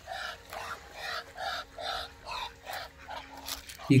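Domestic ducks quacking in a quick run of about a dozen calls, three or four a second.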